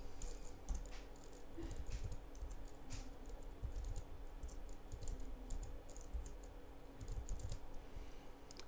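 Typing on a computer keyboard: irregular runs of key clicks.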